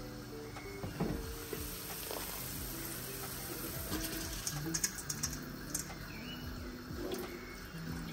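Soaked rice tipped from a bowl into a pot of boiling water, with a splashing pour about halfway through, over soft background music with held notes.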